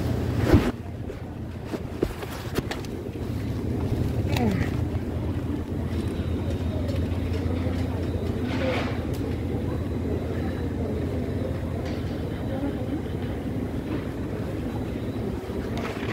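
Supermarket ambience: a steady low rumble with faint, indistinct voices of other shoppers. There is a sharp knock about half a second in and a couple of light clicks shortly after.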